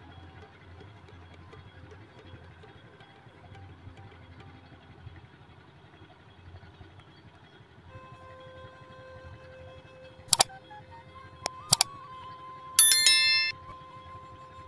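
A low, even outdoor rumble. From about eight seconds in a steady tone joins it, then three sharp clicks, then a loud, bright, chime-like ring about a second before the end.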